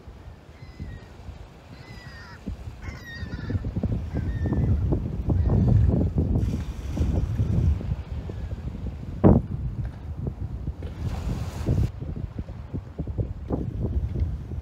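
Gusty wind buffeting the microphone, with a low rumble that swells and falls. A few short bird calls sound in the first three seconds, and there is one sharp knock about nine seconds in.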